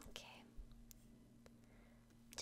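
Near silence with a faint steady low hum. There is a soft breathy whisper sound at the start, and two faint clicks come about a second and a second and a half in.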